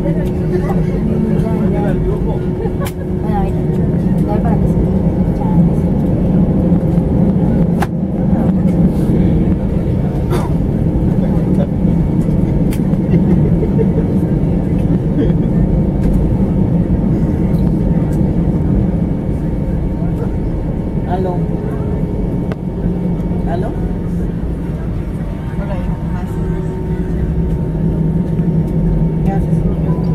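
Steady low drone in the cabin of an Airbus A320 taxiing after landing, with passengers' voices murmuring indistinctly over it.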